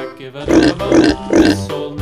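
Domestic pig grunting three times, about half a second apart, over children's background music.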